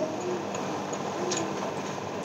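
Fingers mixing rice and vegetable curry on a plate by hand: soft wet squishing, with a faint click a little after a second in.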